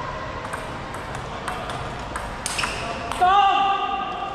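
Table tennis ball being hit back and forth in a rally, a crisp click off bats and table roughly every half second. About three seconds in, a player gives a loud, drawn-out shout, the loudest sound here.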